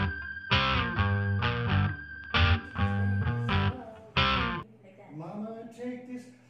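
Guitar music with strummed chords, a new strum about every second or two, which cuts off suddenly about four and a half seconds in; a voice begins talking just after.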